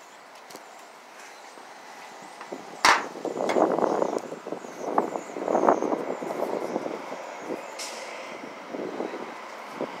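Street traffic: a vehicle passing swells and fades through the middle, with a sharp knock about three seconds in.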